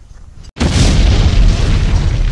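Explosion sound effect edited in. After a brief cut to silence, a loud blast starts suddenly about half a second in, deep and heavy at the bottom, and runs on for nearly two seconds.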